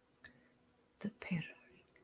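A short, soft whispered word about a second in, with a faint click just before it.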